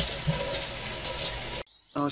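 Toilet flushing, a loud rush of water that cuts off suddenly about one and a half seconds in.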